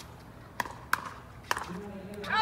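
Pickleball paddles striking the hard plastic ball during a rally: three sharp pocks within about a second.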